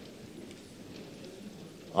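A pause between speech: faint, even low background noise from the chamber's sound feed, with no distinct event.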